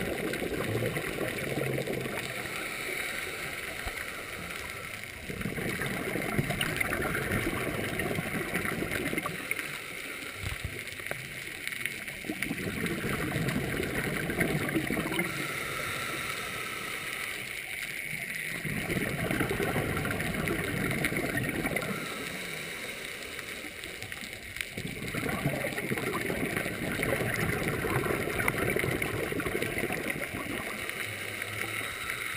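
Scuba diver breathing through a regulator underwater: bubbly exhalations recurring about every six or seven seconds, about five in all, with quieter inhalations between.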